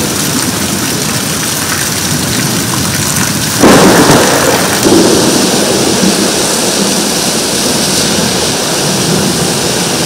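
Heavy rain pouring steadily in a nor'wester thunderstorm, with a sudden loud crack of thunder about three and a half seconds in that rumbles on for a second or so.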